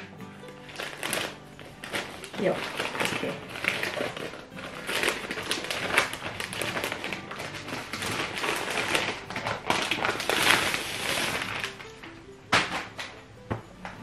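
Gift wrapping paper being torn open and crumpled by hand, in repeated irregular rustling and ripping bursts, with two sharp cracks near the end.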